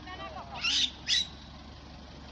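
A man laughing: a falling, voiced laugh trails off and ends in two short breathy huffs about half a second apart.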